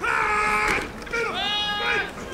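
Excited yelling from people on the sideline as a football play unfolds: two long, drawn-out shouts, the second rising in pitch as it starts.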